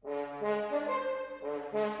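Solo French horn entering suddenly out of silence and playing a quick phrase of several notes in succession.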